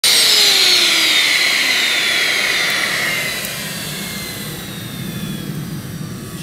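Home-made miniature jet engine (small gas turbine) spooling down: a loud rushing roar with a high whine that falls steadily in pitch, the noise fading over the few seconds.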